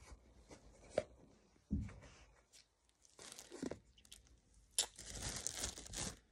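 Clear plastic bag crinkling and rustling as it is handled, with a few scattered clicks and a dull bump early on, then a dense burst of crackling near the end.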